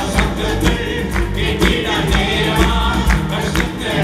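Live gospel worship song: several voices singing together over acoustic guitar and keyboard, with a steady beat.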